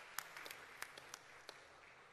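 Congregation's applause dying away, faint, down to a few scattered single claps that thin out near the end.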